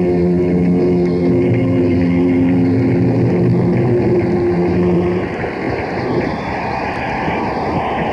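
Rock band on a distorted audience tape holding a sustained closing chord, which stops about five seconds in. A steady noise of the crowd follows, likely cheering and applause.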